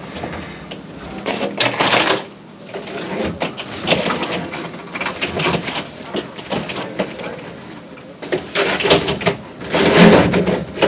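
Coiled corrugated plastic grey waste hose being crammed into a caravan front locker: irregular rustling, scraping and knocking of plastic on plastic, with louder spells about two seconds in and near the end.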